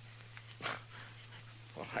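A quiet pause in an old radio recording: a steady low hum with one brief faint sound about two-thirds of a second in. A man's voice starts near the end.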